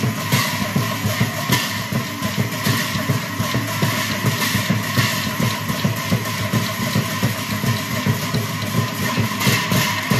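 An ensemble of large Assamese bortal cymbals clashed together in fast, continuous rhythm over a barrel drum, a dense and steady metallic clashing.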